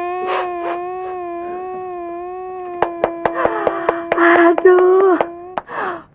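A man crying in one long, drawn-out wailing note that wavers slightly. It grows louder and breathier about three seconds in, then breaks off with a falling sob near the end.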